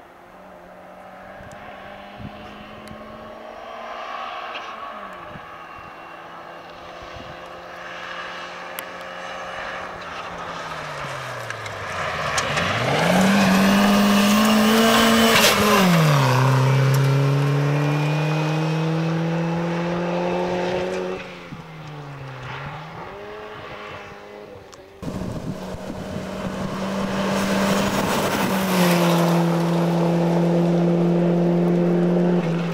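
Rally car engine at full throttle on a gravel stage, rising in pitch as it accelerates and dipping sharply at each lift or gear change. It is loudest as the car passes close about halfway through. After a cut near the end, another car holds a steady high engine note.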